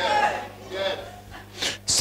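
A man's voice over a church sound system: a short 'yeah', a quieter vocal sound, then a sharp, sneeze-like burst of breath near the end, all over a steady low electrical hum from the amplification.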